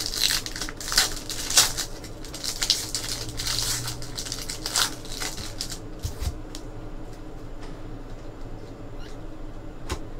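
Trading-card pack wrappers crinkling and tearing as packs are opened, with cards rustling as they are handled. There is a run of sharp crackles in the first half, and softer handling noise after that.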